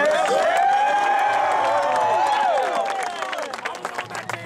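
A team of players cheering and whooping together, with scattered hand clapping. The voices swell up at once and hold, then die down near the end.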